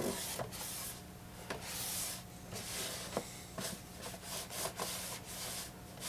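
Cloth rubbing and wiping over the chassis of a Technics SD-QD3 turntable with its platter off: uneven strokes with a few small knocks, over a faint steady hum.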